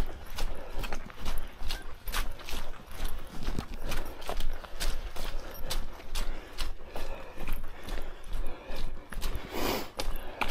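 Footsteps of a hiker walking briskly on a dirt trail strewn with dry leaves, a steady crunch about two and a half steps a second. Near the end comes one louder scuff.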